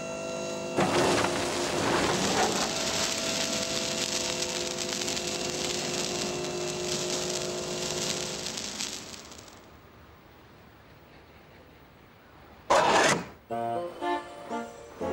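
Sound effect of a toy tipper lorry unloading sand: a long rushing hiss of pouring sand with a steady mechanical whine under it, lasting about nine seconds before fading away. Near the end comes a short, loud burst.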